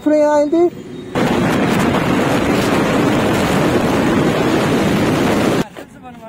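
Loud, steady rush of wind buffeting the microphone, as on a motorcycle at speed. It starts about a second in and cuts off abruptly near the end.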